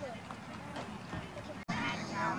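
Faint background voices outdoors, low scattered talk with no clear words. Near the end an abrupt cut brings in louder, nearer voices.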